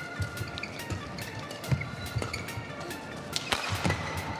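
Badminton rally: rackets striking the shuttlecock in a quick, irregular exchange of sharp hits, over a steady arena background.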